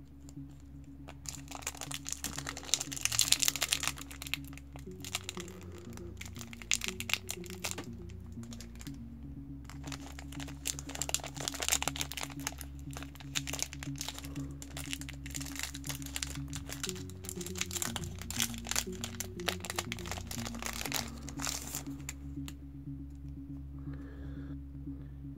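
Crinkling and tearing of a foil trading-card booster pack wrapper as it is opened by hand, a dense run of crackles, over quiet background music with steady low notes.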